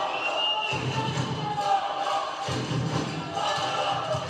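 Rhythmic arena music over crowd noise in an indoor volleyball hall, with a brief high whistle tone near the start, typical of the referee signalling the serve.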